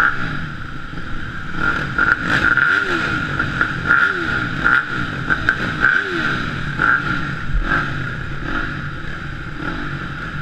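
Several off-road motorcycle engines idling together, with throttle blips rising and falling in pitch about three times around the middle.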